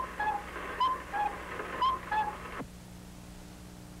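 A two-note whistle, a high note dropping to a lower one like a cuckoo call, sounded three times about a second apart. It stops suddenly about two and a half seconds in, leaving the hum and hiss of an old film soundtrack.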